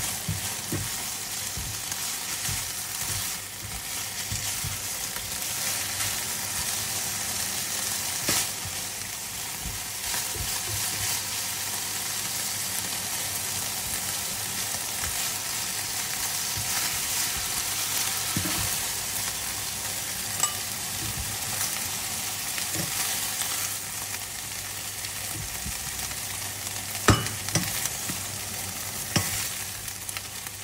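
Beef strips sizzling steadily in a hot nonstick frying pan, stirred and turned with metal tongs. The tongs click against the pan a few times, loudest near the end.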